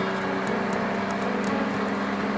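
Porsche engine and road noise heard from inside the cabin while cruising at speed: a steady hum with a low engine drone.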